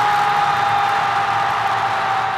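A television football commentator's single long held shout at a goal, its pitch sinking slowly, over the loud noise of a stadium crowd.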